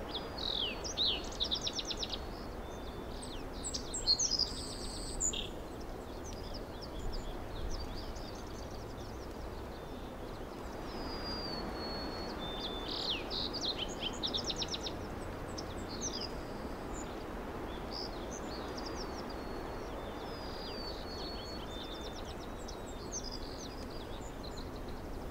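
Small birds chirping and trilling in scattered short bursts over a steady outdoor background hiss. There is no music.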